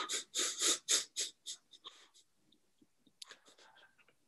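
A man's breathy laughter: a run of quick, airy laughs that dies away about a second and a half in, then a short, softer breathy burst about three seconds in.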